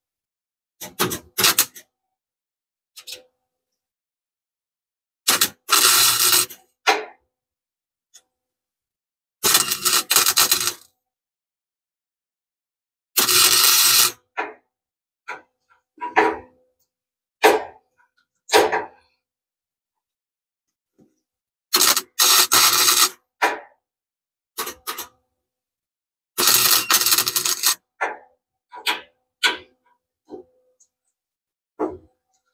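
Welder's arc crackling in separate short bursts on steel: tack welds, about five lasting a second or so and several briefer ones, with pauses between.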